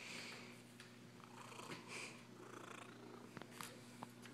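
Domestic cat purring faintly close to the microphone, with soft rustling and two light clicks near the end.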